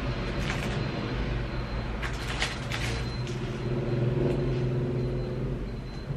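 Steady low rumble and hum, with a few light clicks about two to three seconds in.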